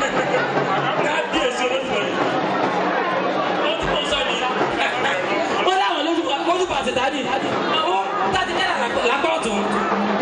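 A man's voice amplified through a public-address system, talking continuously, with crowd chatter behind it.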